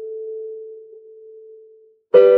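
The held note of a Casio electronic keyboard's piano voice dying away: the upper notes of the chord are already gone, leaving one pure, steady tone that fades slowly to almost nothing by the end.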